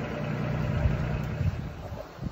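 A vehicle engine idling steadily, fading down near the end.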